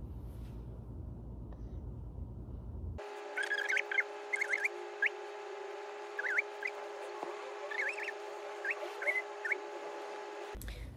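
Low rumbling room noise, then about three seconds in a sudden switch to background music: steady held tones with short bird-like chirps over them.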